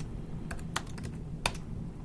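A few scattered keystrokes on a computer keyboard as new code is typed, the loudest about halfway through.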